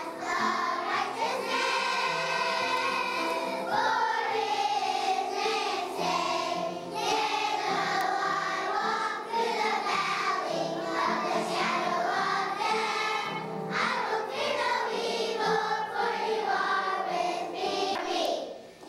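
Children's choir singing a song together, without a break.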